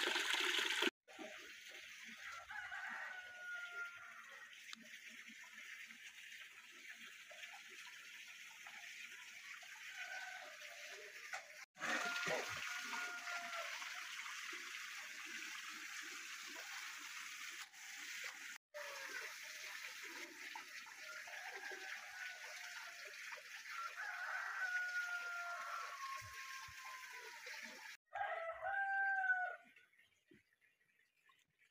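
Tap water pouring into a basin for about the first second, then a low, steady background noise broken several times by roosters crowing; the longest crow, near the end, falls in pitch over a couple of seconds.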